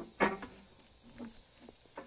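Scissor stabilizer jack under a popup camper being cranked down by hand, with a few faint metallic clicks over a steady hiss. A short pitched sound comes just after the start.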